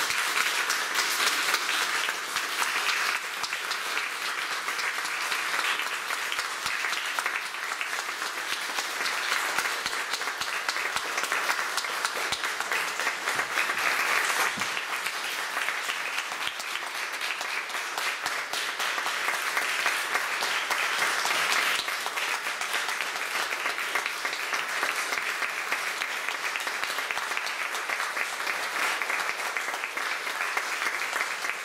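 Audience applauding: steady, dense clapping from many hands.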